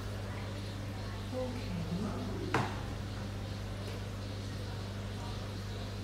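Aquarium heater being placed into a glass fish tank: a single sharp click about two and a half seconds in, over a steady low hum.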